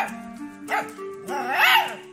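Miniature pinscher puppy vocalizing in two short calls, each rising then falling in pitch. The second call, about a second after the first, is longer and louder.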